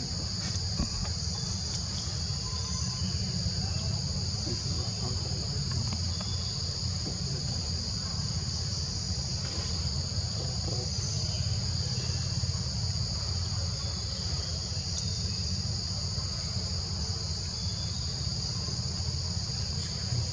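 Steady, unbroken high-pitched drone of forest insects, with a low rumble underneath.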